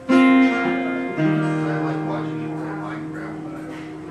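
Acoustic guitar strummed twice, a chord at the start and another about a second in, then left to ring and slowly fade as the closing chords of the song.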